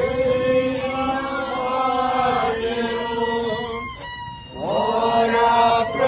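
A small congregation of voices singing a Catholic hymn together, with a violin playing along. The notes are long and held, and the singing drops away briefly about four seconds in before picking up again.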